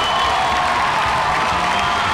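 Ballpark crowd cheering and applauding steadily after the home team's runner scores.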